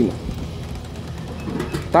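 Steady low hum of a brewing system's pump recirculating mash liquid from one vessel into another, with faint flowing noise over it.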